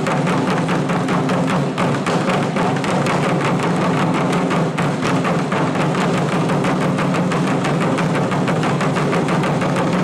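Wadaiko (Japanese taiko) ensemble: several players striking barrel-shaped nagado-daiko with wooden sticks in a fast, dense, unbroken run of beats.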